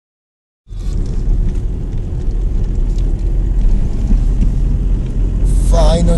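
Car driving on a snow-covered road, heard from inside the cabin: a steady low rumble of engine and tyres that begins after a brief silence at the start. A voice starts just before the end.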